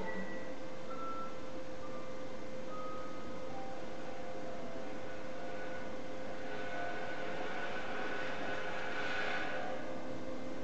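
Clarinet, violin and harp trio playing a hushed passage of contemporary chamber music: a steady held low tone under a few short, high sustained notes, then a hissing swell with high tones that builds from about six and a half seconds in and peaks near nine seconds.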